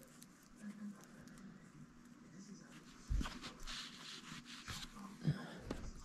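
Faint rustling and soft clicks of yarn being handled and threaded under a yarn-wrapped cardboard pom-pom form, with one soft knock about three seconds in.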